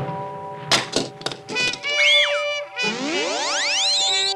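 Cartoon orchestral underscore with sound effects: a few sharp knocks about a second in, a swooping boing-like glide, then a long rising whistle near the end as a gadget powers up and fires a beam.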